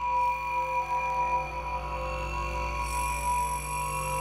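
Generative modular synthesizer patch: sine-wave oscillators and Plaits voices, partly ring-modulated, sounding through a Mutable Instruments Rings resonator and Beads granular processor. Overlapping held tones at several pitches sound over a low drone, with higher tones coming in about three seconds in.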